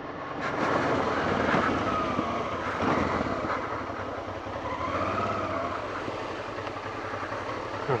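Honda Transalp 650's V-twin engine running under way on a dirt track, its revs rising and falling, with wind and tyre noise mixed in.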